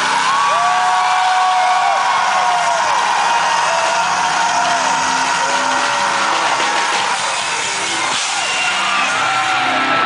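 Live metal band playing loud through an outdoor stage PA, heard from inside the crowd, with long held shouted notes that rise, hold and fall away several times and crowd yelling and whooping over the music.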